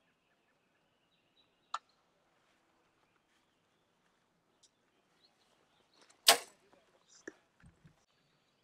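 A compound bow is shot: one sharp crack from the string's release about six seconds in, followed about a second later by a fainter knock. A single smaller click comes earlier, while the bow is held at full draw.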